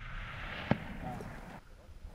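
The echo of a hunting rifle shot rolling off the mountainside and fading over about a second and a half, with a single sharp click about two-thirds of a second in and a brief low voice.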